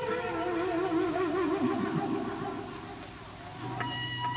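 Electric guitar holding wavering, bending notes that fade, then new steady high-pitched tones come in near the end, as in live rock feedback and vibrato-bar effects.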